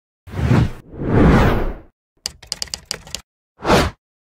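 Logo-intro sound effects: two whooshes, then a quick run of sharp clicks, then a short whoosh near the end.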